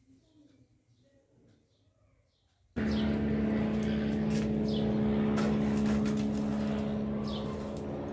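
A steady motor drone with a strong hum, like an engine running nearby, cuts in suddenly about three seconds in and holds. Short bird chirps sound over it, and before it there are only faint small knocks.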